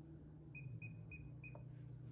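Four short, high electronic beeps, evenly spaced about a third of a second apart, from a Vinmetrica SC-300 pH meter as it is switched into calibration mode, over a faint low hum.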